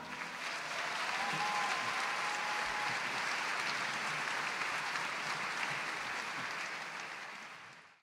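Audience applauding at the close of a live concert song, the clapping fading out near the end.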